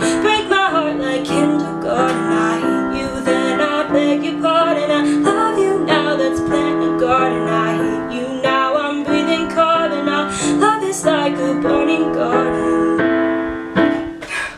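Piano chords played under a woman's wordless vocal runs and held notes, closing the song; the music ends right at the end.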